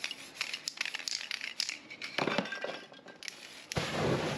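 A run of light clicks and clinks, then two rushing whooshes as aerosol spray paint is set alight; the second and louder whoosh, near the end, is a fireball flaring over the painting.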